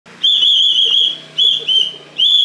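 A whistle blown in three blasts, each a steady, shrill high tone: one long blast of about a second, then two short ones in quick succession.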